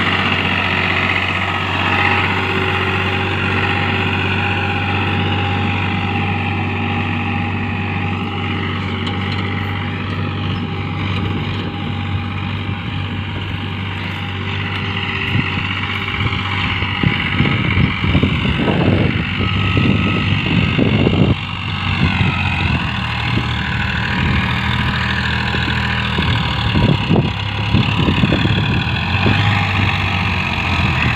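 Farmtrac Champion tractor's diesel engine running steadily under load as it drags a rear blade through sandy soil. Irregular low rumbling bursts come in over it about halfway through and again near the end.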